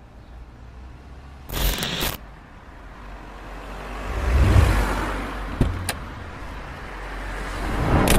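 Car sounds: a short noisy burst about a second and a half in, then a car running past, its rumble swelling to a peak around the middle and fading away, followed by two sharp clicks.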